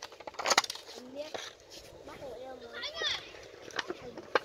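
Faint voices of children and other people talking and calling some way off, with a few sharp light clicks in the first second.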